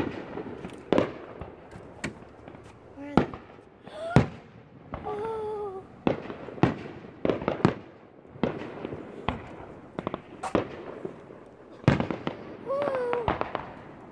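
Aerial fireworks shells bursting: a string of sharp bangs and crackles at irregular intervals, the loudest about four seconds in.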